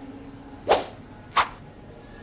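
Two quick whip-like swoosh sound effects, about two-thirds of a second apart, added in editing as a caption comes on screen.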